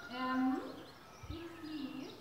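A woman singing into a microphone through a small amplifier. She holds long notes that glide up and down in pitch, loudest about half a second in.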